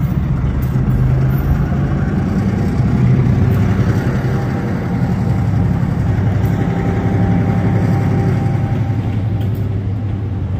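Diesel engine of North Shore Railroad locomotive 446 running steadily as it passes, hauling a string of freight cars.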